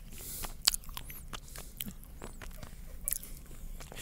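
A mouthful of honeycomb chewed close up against a microphone: a quiet, irregular scatter of small crackles and wet mouth clicks as the wax comb is bitten and worked.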